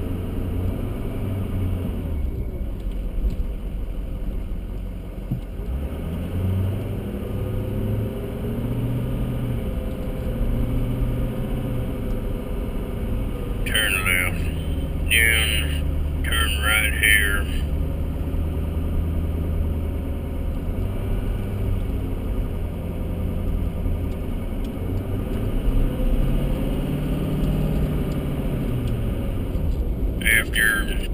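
Car engine and road rumble heard from inside the cabin while driving, with the engine note rising and falling as the car speeds up and slows. A voice is heard briefly about halfway through.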